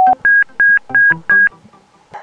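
Electronic beeps from a GSM Mercury underwater communication unit: one long lower tone ending just after the start, then four short, evenly spaced higher beeps. They answer a press of the unit's blue button, signalling its exit from DAT mode.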